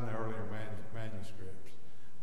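Only speech: a man preaching, talking steadily.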